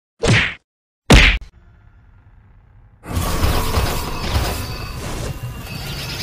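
Two sharp whacking hits about a second apart. From about three seconds in comes a steady, dense rushing whoosh of a cartoon magic portal swirling open, with a low rumble under it.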